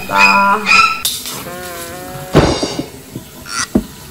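A man's short, strained vocal cries and groans of discomfort with a wet face, coming in several quick syllables. A breathy burst follows about two and a half seconds in.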